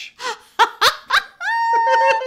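A woman laughing hard: a string of short bursts, then a long high-pitched squeal from about a second and a half in.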